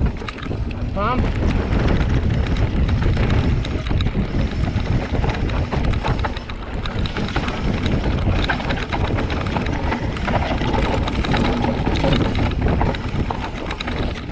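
Wind buffeting an action camera's microphone, mixed with the continuous clatter of a mountain bike riding fast downhill over a rough dirt and rock trail. The noise stays loud throughout, made up of many small knocks from the bike and trail.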